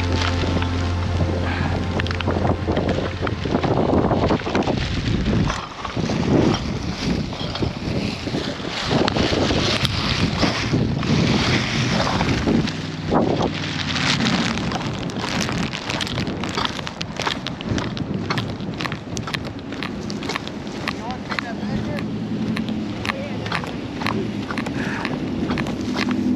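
Wind buffeting the microphone, with crunching steps in dry sand.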